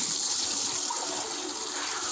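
Animated-show energy-blast sound effect: a steady rushing hiss, like gushing water, that holds without a break.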